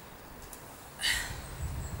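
A woman's short, sharp breath about a second in, as she does bodyweight squats, over faint background hiss.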